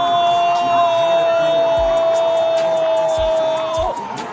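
A football commentator's long held goal shout: one steady, unbroken note that bends down and cuts off near the end, over background music.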